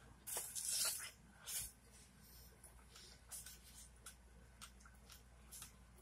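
Close-up eating sounds of biting into a fresh strawberry coated in sweetened condensed milk. Loud wet bites come in the first second and again about a second and a half in, followed by softer, scattered wet chewing and mouth clicks.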